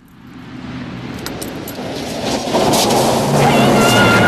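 A Volvo station wagon approaching, its engine and tyres growing steadily louder. Near the end its tyres slide and crunch across loose gravel.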